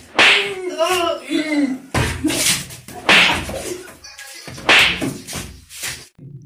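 Open-handed slaps landing hard on a seated man's head and back, four sharp smacks spread over the few seconds, with a man's voice between the first two.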